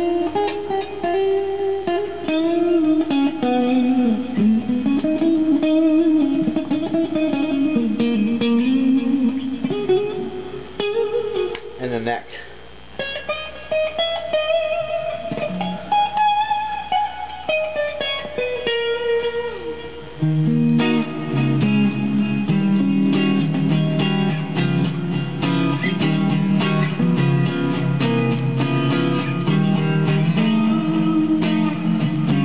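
Electric guitar, a Fender Lonestar Stratocaster on its neck-and-middle single-coil pickup setting played through an amp, picking single-note lead lines with string bends. About twenty seconds in it changes to a lower, rhythmic chord riff.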